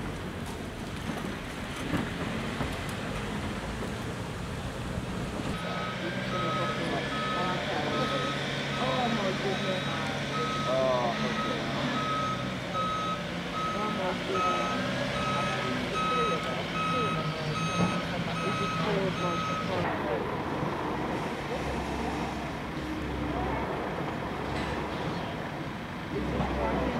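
A vehicle's reversing alarm beeping at a high pitch, in evenly spaced beeps, starting about five seconds in and stopping about six seconds before the end, over a running engine.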